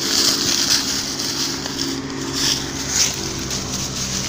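A motor vehicle's engine running at a steady, even pitch, with a steady hiss above it.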